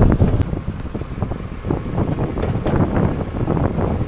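Engine of a yellow earthmoving machine running, with irregular clattering and rattling throughout, heard from inside its cab.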